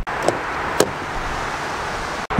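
Rear door latch of a GMC Sierra 1500 extended cab releasing as the outside handle is pulled and the door opened: a faint click, then a sharper one just under a second in, over a steady hiss.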